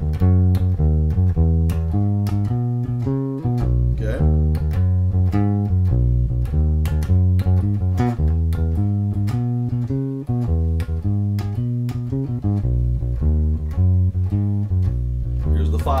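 Electric bass guitar playing a 1-4-5 blues bass line in the key of B: a steady, even run of plucked low notes, several to the second, moving from the root to the four and the five chords.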